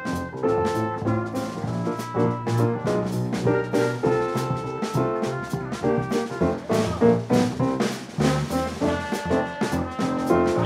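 Small jazz combo playing: a trumpet carries the melody in held, sustained notes over upright bass, drum kit and keyboard.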